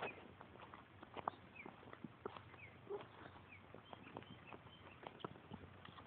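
Faint, irregular light taps of a toddler's sneakers walking on asphalt, with short bird chirps repeating in the background.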